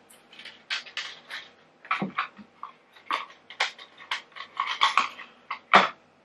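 Irregular run of small clicks and rustles from something being handled, with a sharper, louder click near the end.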